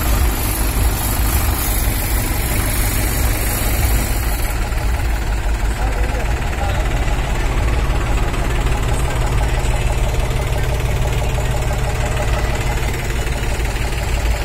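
Sonalika tractor's diesel engine running steadily close by, a dense low rumble that holds level throughout.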